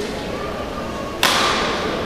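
A badminton racket strikes a shuttlecock once, about a second in, with a sharp crack that rings out in the large hall. It is the serve that starts the rally.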